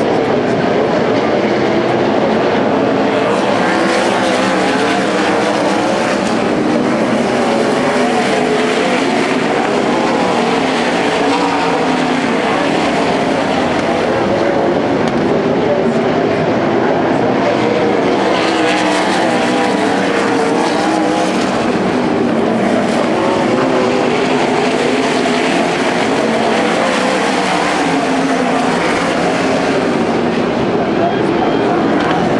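A field of winged sprint cars racing on a dirt oval, their V8 engines running hard together in a loud, continuous drone whose many pitches rise and fall as the cars throttle through the turns.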